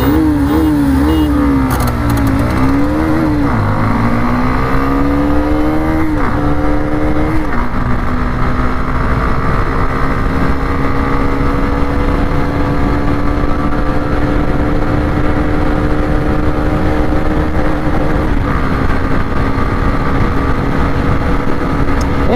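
Single-cylinder 125 cc engine of a Hero Xtreme 125R at full throttle in a drag race, ridden with the camera on board. The revs waver up and down for the first few seconds, then climb and drop sharply with quick upshifts about six and seven and a half seconds in. After that the engine holds at high, nearly steady revs close to its top speed of around 100 km/h, with one more small drop near the end. Wind rumbles on the microphone throughout.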